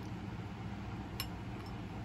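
A single light click about a second in as a small glass jar with a metal lid is set down on a tabletop, over a steady low hum in the room.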